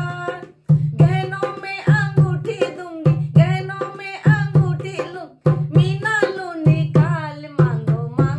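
A woman singing a bhat geet, a north Indian wedding folk song in Hindi, accompanying herself on a dholak with a steady, repeating beat of low hand strokes. The song breaks off briefly twice between lines.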